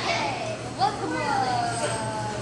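Speech only: high-pitched young voices talking, unintelligible, over a steady low hum.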